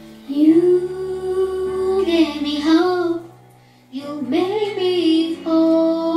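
Young girl singing a slow song over instrumental accompaniment, in two sustained phrases with a short breath pause about halfway through.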